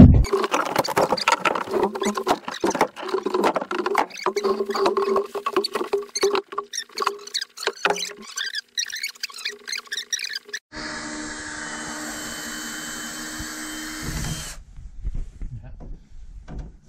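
Pry bar levering up an old OSB shed floor: wood creaking and nails squeaking among many knocks and clatters. About eleven seconds in, a cordless drill runs steadily for about four seconds.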